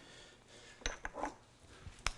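A few faint clinks and clicks of kitchenware being handled, a spoon and a ceramic bowl. They come about a second in and again near the end.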